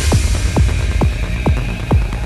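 Psytrance track stripped down to its electronic kick drum and bass: a steady four-on-the-floor beat of about two kicks a second, each a short thump falling in pitch, over a continuous low bass hum, with the cymbals and higher parts dropped out.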